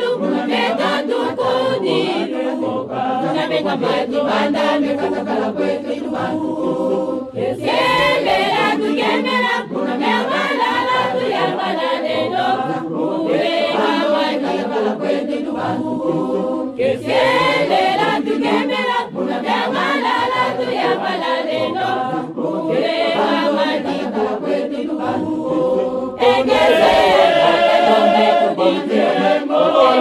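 A choir of men and women singing a chant-like song in Kikongo, many voices together in continuous harmony. It swells louder near the end.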